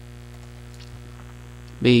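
Steady electrical mains hum on the recording, with a man's voice starting a word near the end.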